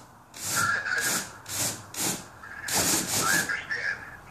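Rhythmic rubbing scrapes, about two to three a second, from a homemade foam Olmec head prop as its jaw is worked open and shut. A thin squeak sounds twice, about half a second in and near the end.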